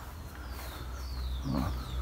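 Small birds calling with a run of quick, high, descending whistled notes over a low steady rumble, with a short voiced sound near the end.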